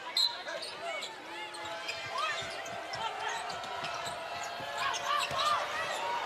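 Basketball shoes squeaking on a hardwood court, many short squeals in quick succession as players cut and stop, over steady arena crowd noise.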